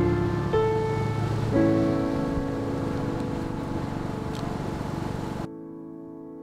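Slow piano music, single notes struck about once a second and left to ring. A steady hiss under it cuts off abruptly near the end.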